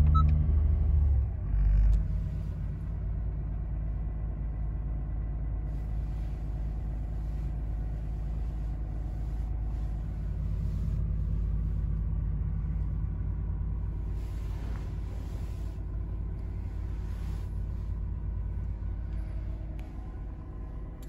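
2019 Acura NSX's twin-turbo V6 running while parked, heard from inside the cabin. It is loud at first and drops about a second in, gives a short blip near two seconds, then settles into a steady low idle.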